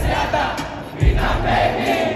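Large concert crowd's voices over a bass-heavy hip-hop beat from the PA. The bass fades out in the first second, comes back hard about a second in, and drops again near the end.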